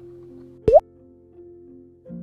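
Background music of soft sustained notes, with a single short, loud plop about two-thirds of a second in, rising quickly in pitch like a water drop: a transition sound effect.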